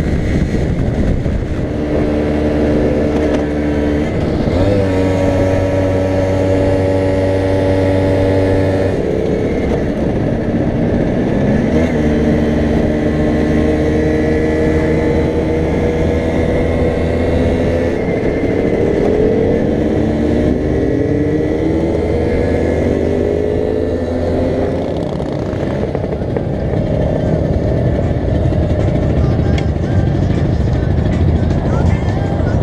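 Vespa PK scooter's two-stroke single-cylinder engine running under way, heard close up with wind on the microphone. Its pitch holds steady between several sudden steps as it changes gear, then falls in a series of glides in the second half as the scooter slows.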